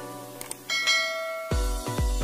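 Bell-ding sound effect from a subscribe-and-bell animation, a bright chime that rings out and fades over light intro music. About three-quarters of the way through, a bass-heavy electronic beat comes in.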